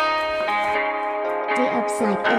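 Guitar music starts abruptly with ringing plucked notes, after the previous track has faded out.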